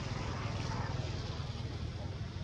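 Steady low rumble under an even hiss of outdoor background noise, with no distinct events.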